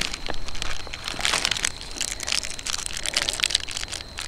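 Crinkling and rustling of plastic ration packaging as it is handled: a clear plastic bag is worked open and a wrapped chocolate bar is pulled out of it, giving a steady stream of irregular crackles.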